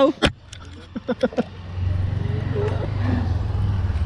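A few sharp clicks near the start, then a motor vehicle engine's low drone comes in about two seconds in and holds steady.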